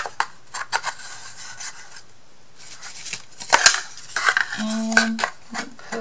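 Thin wooden kit pieces clicking and knocking against each other as they are handled and pushed into their slots, with light wood-on-wood scraping between the knocks.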